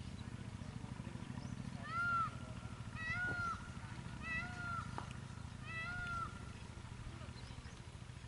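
An animal calls four times, about a second apart, each call a short high note that rises and falls, over a steady low hum.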